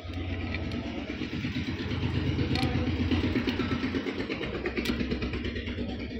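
A motor vehicle's engine running, growing louder to a peak about halfway through, then easing off.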